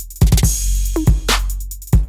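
Electronic drum loop playing: four-to-the-floor kick drum hits under a 16th-note closed hi-hat pattern. The hats are sidechain-compressed by the kick, so they duck each time the kick lands and leave rhythmic holes, over a sustained low bass.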